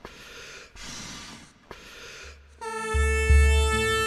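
Three puffs of breath blown into a tulum, the Black Sea bagpipe, filling its bag; a little over halfway in the tulum sounds, a steady held reedy note over its drone, with a deep boom underneath.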